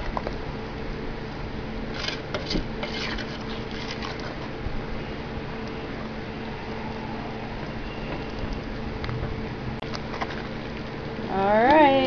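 A spoon stirring thick fig jam in a stainless steel pot as it bubbles on its way to a full rolling boil, with occasional scrapes of the spoon against the pot, over a steady low hum. A voice comes in near the end.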